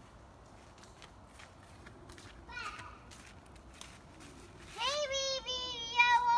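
A child's high-pitched voice, drawn out in long held and gliding tones, starts loudly near the end, over faint outdoor background with a brief voice in the middle.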